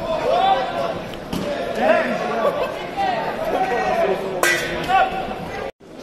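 Voices shouting and chattering in a large sports hall, with one sharp knock about four and a half seconds in. The sound cuts out for a moment near the end.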